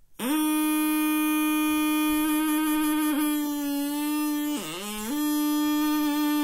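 A plastic drinking straw with its end flattened and cut into a double reed, not yet given finger holes, blown as a single loud, buzzy note. It holds one pitch for several seconds, sags briefly in pitch near the end, then comes back to the same note.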